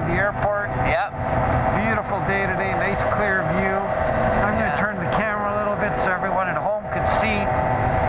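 Airborne Edge X trike microlight's engine and propeller droning steadily as it climbs out just after takeoff, heard through wind rush on the open cockpit, with a man talking over it throughout.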